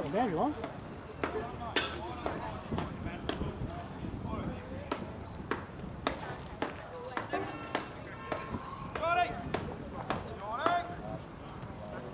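Distant shouted voices across an open football ground, from players calling on the field, over scattered short knocks. A single sharp crack about two seconds in.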